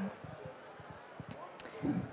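A pause in a woman's talk: quiet hall room tone with a few faint low thuds, and her voice starting again right at the end.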